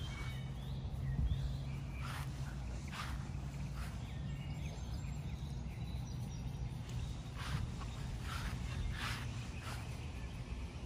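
Outdoor ambience: a steady low hum with a few faint, brief chirps or clicks scattered through it.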